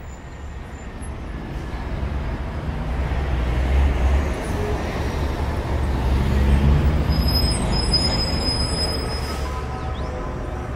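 Vehicle rumble and road noise, a heavy low rumble that builds louder over the first few seconds and swells twice.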